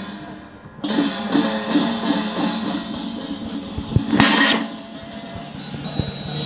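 Chinese procession percussion of hand gongs, drum and cymbals playing with ringing gong tones. The playing thins out briefly and picks up again just under a second in, with drum strikes and a loud crash about four seconds in.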